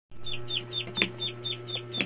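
Duckling peeping rapidly, about five short, high peeps a second, each dropping in pitch, over a steady low hum.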